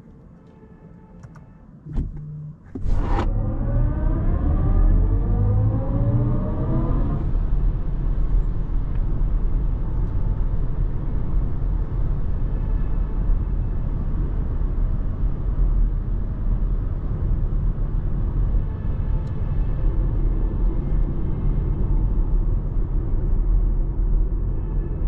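Cabin sound of a 2023 BMW iX1 electric SUV pulling away hard from a standstill. After a short knock and a sharp click, a stack of electric-drive tones climbs in pitch for about four seconds, then gives way to steady tyre and road rumble at cruising speed.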